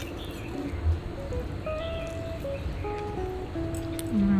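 Background music: a simple melody of held single notes moving from pitch to pitch.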